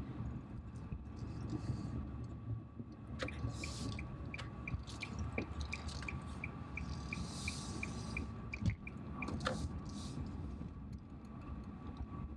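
Car cabin road noise while driving: a steady low rumble. Over it, from about three seconds in, comes a run of short high electronic beeps, about three a second, which stops a few seconds before the end.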